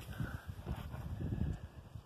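Low, irregular buffeting rumble on the microphone.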